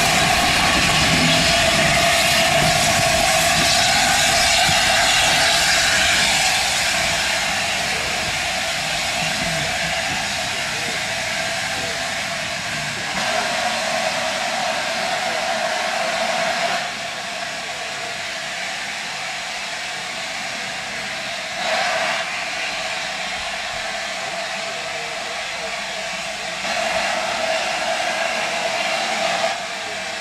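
A4 Pacific steam locomotive hissing steam as it draws slowly away, loud at first and then fainter, with several louder spells of hiss.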